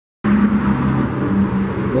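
A loud, steady engine-like hum with a rushing noise, cutting in abruptly just after the start.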